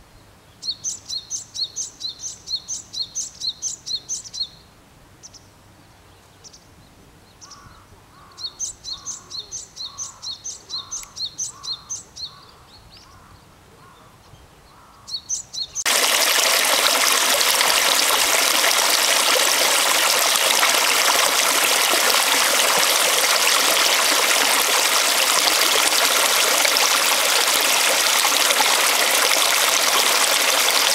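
A small bird singing two runs of quick, evenly repeated high notes, about three a second, with a lower series of notes beneath the second run. A little past halfway the sound cuts abruptly to the loud, steady rush of a flowing stream.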